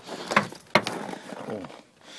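Two sharp mechanical clicks about half a second apart inside the van's cab as the driver gets in, followed by a short exclamation.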